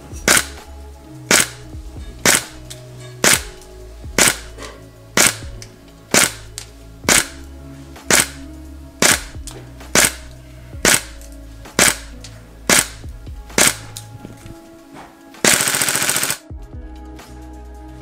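Tokyo Marui MP5A5 Next Gen Recoil Shock airsoft electric gun firing single shots through a chronograph, about one a second, each a sharp crack of the gearbox and recoil weight. Near the end comes a rapid string of shots lasting about a second.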